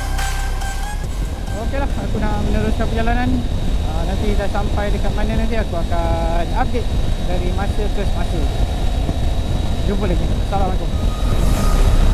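Triumph Tiger 850 Sport motorcycle at highway speed, about 125 km/h: a steady heavy rush of wind and engine noise, with a person's voice heard over it from about two seconds in.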